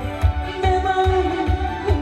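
A man singing a Korean song into a microphone over recorded accompaniment with a steady bass beat, about three beats a second. His voice holds a long note through the middle.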